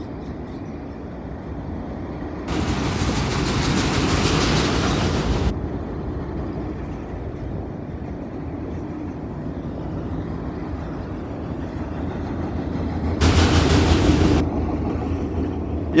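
Freight train of autorack cars rolling past, a steady rumble of wheels on rails. Twice a louder rushing noise rises over it: once for about three seconds early in the passage, and once for about a second near the end.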